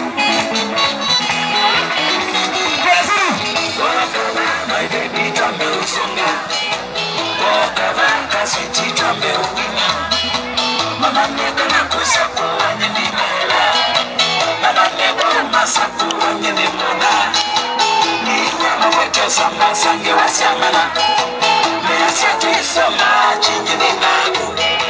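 Upbeat dance music with a steady beat, playing loud throughout.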